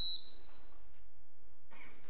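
A single short, high electronic beep from the podium's countdown timer as it is reset for the next speaker, fading out within about half a second.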